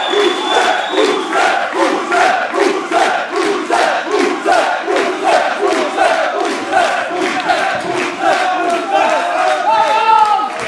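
Wrestling crowd chanting in unison, with rhythmic clapping at about two claps a second.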